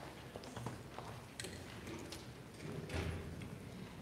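Faint scattered knocks of footsteps on a hard floor over low room noise in a large hall.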